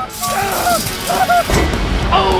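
Background music with short repeating melodic figures; about a second and a half in, a low rumble comes in under it.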